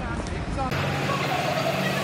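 City street traffic with the voices of passers-by. Under a second in, the sound changes abruptly and a steady low engine hum comes in.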